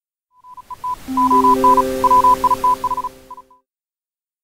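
Short synthesized segment-break stinger. A beeping tone is keyed on and off in an irregular pattern like Morse code over a hiss, while three steady low notes come in one after another to build a chord. It stops abruptly after about three seconds.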